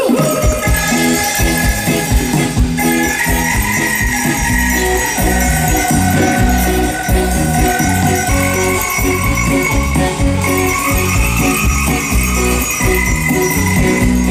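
Live upbeat pop band playing an instrumental break with a steady beat, bass and sustained keyboard-like tones, with bright jingling shaker-type percussion over it and no singing.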